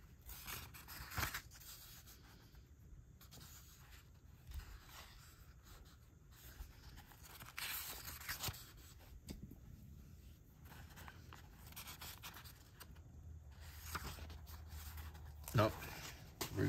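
Thin pages of a thick old Sears, Roebuck catalog being turned and smoothed by hand: soft, scattered paper rustles and flicks, with a louder page turn about eight seconds in. Just before the end comes a louder knock and shuffle as books are moved.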